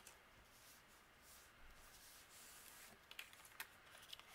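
Near silence: faint rustling of cardstock panels being pressed together and handled, with a few light ticks near the end.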